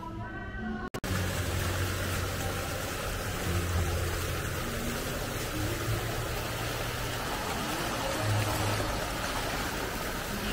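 Water pouring and splashing steadily from a wooden water flume, starting suddenly about a second in, with background music playing faintly underneath.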